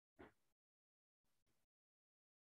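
Near silence, broken only by two faint, brief sounds: one about a quarter second in and one around a second and a half.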